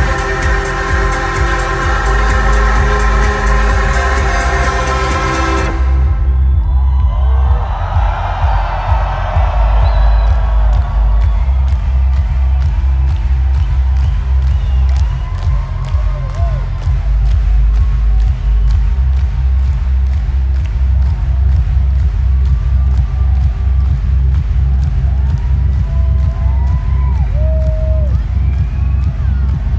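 Electronic dance music played loud over an arena sound system, heard from within the crowd. A dense synth passage cuts off about six seconds in and the crowd cheers. Then a steady kick drum of about two beats a second with ticking hi-hats carries on, with scattered whoops.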